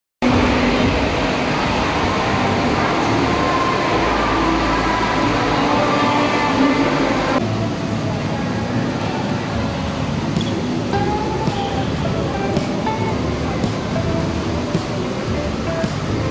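The steady din of a busy indoor pool hall: many people's voices and splashing water, with music faintly under it. The sound changes abruptly about seven seconds in and is a little quieter after that.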